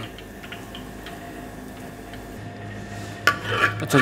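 Faint steady bubbling of hot frying oil in a wok. About three seconds in comes a louder clatter of a metal spatula against a ceramic plate.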